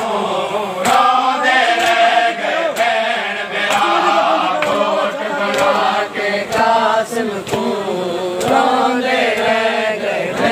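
Men chanting a noha, a Shia lament, in unison, with the rhythmic slaps of chest-beating (matam) about once a second.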